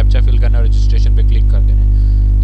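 Loud, steady electrical mains hum, a low buzz throughout, with a man's voice talking over it for the first second or so.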